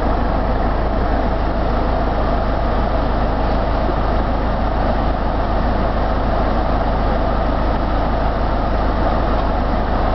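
Car engine idling steadily, heard from inside the car's cabin: a constant low noise that does not change in pitch or loudness.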